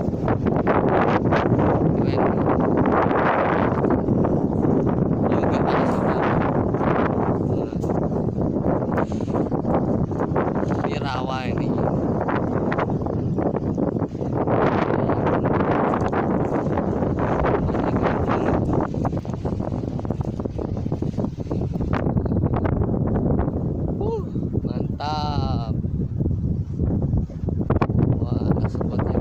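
Steady, loud rushing of wind and surf at an open beach, rough on the phone microphone. Two short wavering voice-like calls stand out, one around the middle and one near the end.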